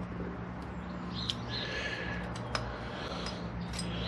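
Small scattered metal clicks and scrapes as circlip pliers are worked into a clutch master cylinder bore to grip its internal circlip, the pliers fouling the housing, over a steady low hum.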